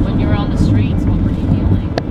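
Steady low road and engine rumble of a car driving at speed, heard from inside the cabin, with a brief snatch of voice about half a second in.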